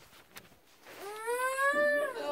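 A toddler whining in protest: one drawn-out, slightly rising whine starting about a second in, because she wants to be picked up and carried.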